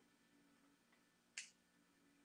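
Near silence, broken by one short, sharp click a little past halfway.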